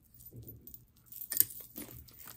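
Costume jewelry being handled: soft handling noise with a quick cluster of light clicks about a second and a half in, as a metal bangle is set down on the pile and pieces are picked through.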